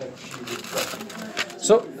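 Rustling and light clatter of handling at a wooden lectern, with a man's voice starting near the end.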